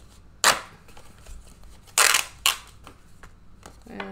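Three sharp snaps and knocks close to the microphone, about half a second in, at two seconds and again half a second later, as paper scratch-off lottery tickets are handled on a table, with faint rustling between.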